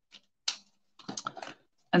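Faint small plastic clicks and taps from colouring markers being capped and set down on the craft mat, one or two near the start and a quick cluster in the second half, as a dark yellow marker is swapped for a light yellow one.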